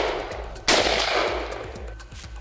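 A gunshot about two-thirds of a second in, following the echoing tail of another shot fired just before; each dies away over about a second.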